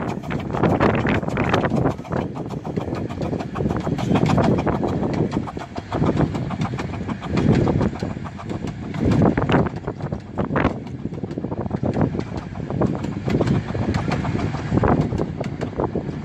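Romney, Hythe & Dymchurch Railway 15-inch gauge steam train rolling past, its coaches' wheels clicking over the rail joints as the locomotive draws away. Gusting wind buffets the microphone throughout.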